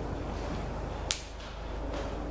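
A single short, sharp click about a second in, over a steady low hum.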